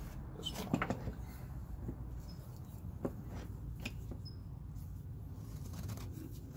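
Wooden handscrew clamp being set onto a glued-up wooden neck blank and screwed tight: a few scattered light knocks and clicks of wood and metal, over a steady low hum.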